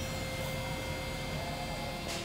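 Steady hum and hiss with a faint high whine, from a fog machine and an inflatable decoration's blower running as fog pours out.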